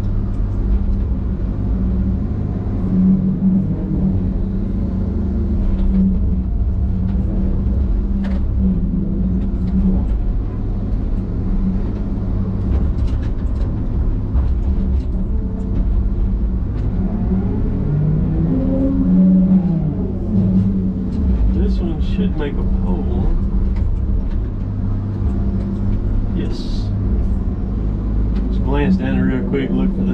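Diesel engine of a John Deere knuckleboom log loader running steadily under load, heard from inside the cab, as the boom and grapple swing and load logs. Its note rises and falls for a few seconds around the middle.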